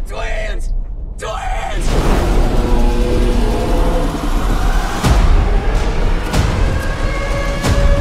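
Trailer soundtrack mix: a deep storm rumble under swelling dramatic music with sustained tones. Heavy booming hits land about five seconds in and again near the end.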